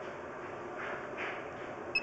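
Steady rustling and scraping noise as a sewer inspection camera is handled and pulled out of the drain, with a few swells, then one short, high electronic beep right at the end.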